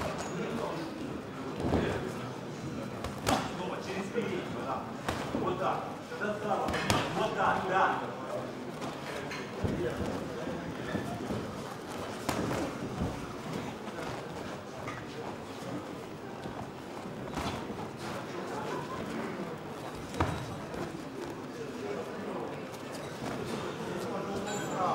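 Boxing-match ambience: indistinct audience and corner voices with shouting that swells about seven seconds in. Scattered sharp smacks of gloved punches land about seven times.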